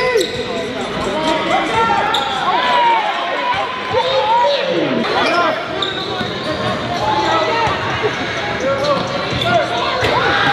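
Live basketball play on an indoor court: a ball bouncing and many short sneaker squeaks on the floor, with players' voices in the gym.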